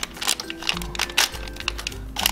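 Crinkling and small crackles of a plastic Lego minifigure blind bag handled in the fingers, with soft background music holding steady notes underneath.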